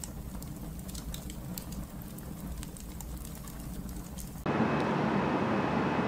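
Crackling-fire sound effect: a low rumble with scattered sharp crackles. About four and a half seconds in, it cuts off suddenly to louder, steady outdoor background noise with a faint high whine.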